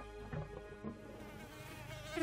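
An insect, fly-like, buzzing with a wavering pitch that grows more noticeable in the second half, over a soft, steady music score.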